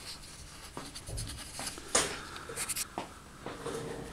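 Small cardboard box being opened by hand: scratchy rustling of cardboard flaps and paper, with small clicks and a sharp knock about two seconds in.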